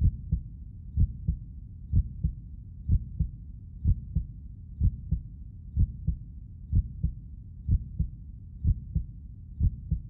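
Heartbeat sound effect: a deep double thump, lub-dub, repeating steadily about once a second.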